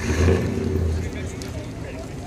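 A car engine running close by, coming in suddenly loud with a deep low hum and easing back over the next second or so, with people talking in the background.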